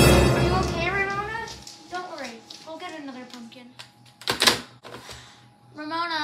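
Dramatic music fading out, then a voice calling out in wordless sounds that rise and fall in pitch, and a short loud noise about four and a half seconds in.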